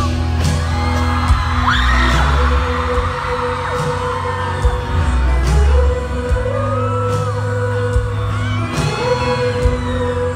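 Live band music heard from the audience in a concert hall: electric guitar and bass holding long notes over scattered drum hits, with fans screaming and whooping over it.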